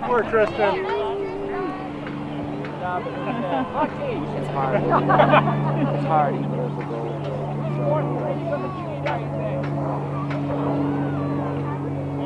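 Indistinct voices of children and adults calling and chattering, with no words made out, over a steady low engine-like hum that grows louder about four seconds in.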